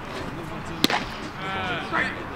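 A baseball pitch smacking into a catcher's leather mitt: one sharp pop a little under a second in. A short voice call follows near the end.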